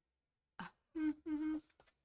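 A woman's short laugh, then two held, hummed syllables at a steady pitch, like a closed-mouth "mm-hmm".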